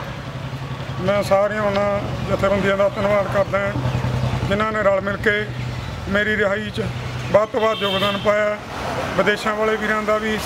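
A man speaking Punjabi, over the steady low hum of an idling vehicle engine.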